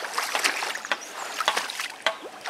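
Water splashing and sloshing close to the microphone in quick, irregular little splashes.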